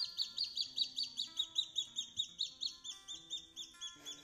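Baby chick peeping steadily: a fast, even run of short chirps, about five a second, each dropping in pitch.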